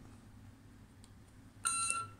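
Electronic starting pistol's swimming-start signal played through a small megaphone: a single short, high electronic beep near the end, after a moment of quiet.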